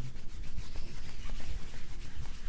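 Hands rubbing and pressing a man's shoulders through his shirt during a shoulder massage: fabric rubbing against fabric and skin, with irregular dull low bumps from the pressure.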